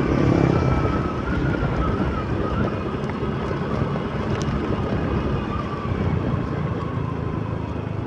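Small motorcycle engine running steadily while riding along, with wind rushing over the microphone and a faint wavering whine.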